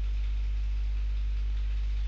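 Steady low hum with a faint hiss, unchanging throughout.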